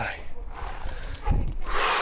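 Rubbing and scuffing handling noise from a handheld camera and clothing as a hiker scrambles uphill, with a dull thump a little over a second in and a heavy breath near the end.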